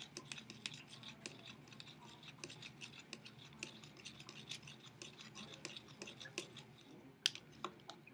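A spoon stirring a thick lotion-and-glue mixture in a small clear cup: faint, rapid scraping and clicking against the cup wall, several strokes a second. There is a sharper click near the end.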